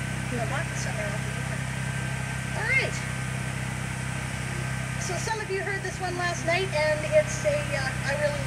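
Indistinct talking that picks up in the second half, over a steady low hum.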